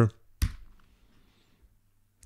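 A single short click on the computer as the preferred font is picked.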